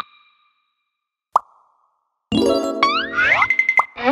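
Cartoon sound effects and music: a short ringing ping at the start, a single pop about 1.4 s in, then a busy burst of cartoon music with sweeping glides up and down from a little past the halfway point.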